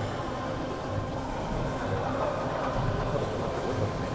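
Background music over steady gym room noise, with no distinct clank of plates.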